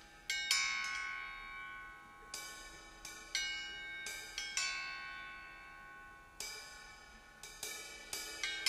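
Long hanging metal chimes and small cymbals struck one at a time, about ten strikes in a loose, unhurried pattern. Each strike rings on with bright metallic tones that slowly fade.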